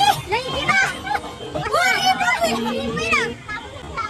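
High-pitched excited shouts and cries from a group of women's voices, with music underneath; the voices drop away about three seconds in.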